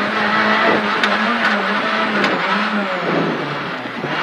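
Renault Clio R3C rally car's 2.0-litre four-cylinder engine, heard from inside the cabin, running at steady high revs with small rises and dips. The revs fall away about three seconds in.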